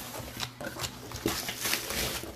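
Corrugated cardboard box being handled: the flaps are folded back and the box shifted, giving a run of irregular rustles and scrapes that are loudest in the second half.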